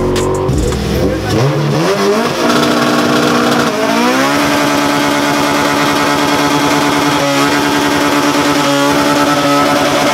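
Car engine revved hard for a burnout. The revs climb in steps, rise sharply about four seconds in, and are then held high and steady while the tyres spin.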